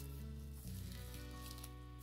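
Quiet background music of sustained, held notes that shift about two-thirds of a second in, over a faint hiss.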